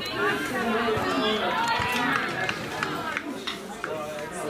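Several voices calling and shouting across an open playing field, with a few short, sharp knocks in between.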